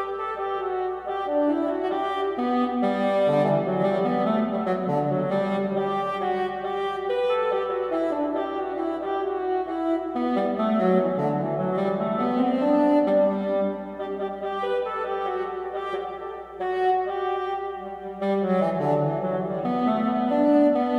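Vienna Symphonic Library sampled heckelphone playing an unaccompanied baroque-style melody in computer notation playback: a continuous line of quickly changing notes.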